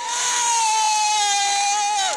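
A racing motorcycle running flat out past the crowd: one loud, high-pitched engine note held for about two seconds, sinking slightly in pitch as it goes by.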